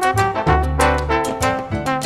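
Instrumental Latin jazz background music: brass lines over a bass line with a steady percussion rhythm.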